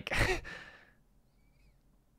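A short, breathy sigh that fades out within about a second, followed by near silence.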